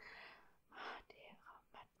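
A young man whispering faintly to himself into a close microphone: a few short breathy bursts with no voiced tone.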